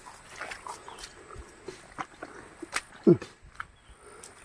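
A dog gives a single short, low bark about three seconds in, falling in pitch. Under it are the scattered soft clicks of footsteps on a wet, muddy path.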